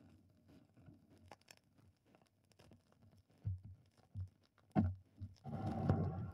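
Faint crackle and clicks of a turntable stylus riding the run-out groove of a 45 rpm vinyl record, with soft low thumps a little over a second apart and a louder low rumble near the end.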